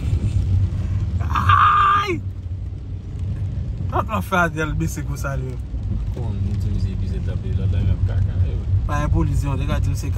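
Steady low rumble of a car heard from inside the cabin while driving. A brief, louder, higher-pitched noise comes about a second in, and a voice is heard twice.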